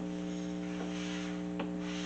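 Steady electrical mains hum on the recording, a low buzz with a ladder of overtones, from the faulty microphone that the hosts say they need to fix.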